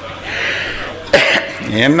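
A single sharp, loud cough about a second in, close to the microphone.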